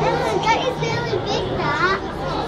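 Indistinct children's voices chattering and calling out, with no clear words.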